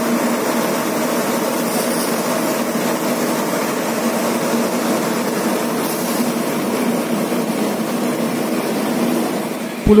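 Steady running of a police water-cannon truck's engine and pump as it sprays a jet of water, an even hum with no breaks.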